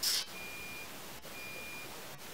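Faint high-pitched electronic beeps, each about half a second long and about once a second, over a low hiss; a short hissy burst right at the start.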